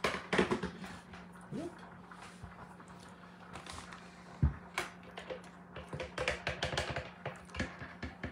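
A plastic spatula stirring and scraping creamed corn in a plastic chopper container, with light clicks and one sharper knock about halfway through, then quick repeated scraping strokes near the end. A steady low hum runs underneath.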